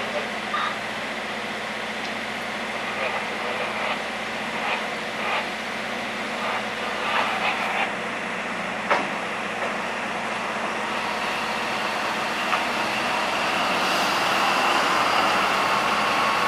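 Diesel locomotive engine running at low throttle as the locomotive rolls slowly closer, its steady hum growing louder over the last few seconds, with a few short clanks and knocks.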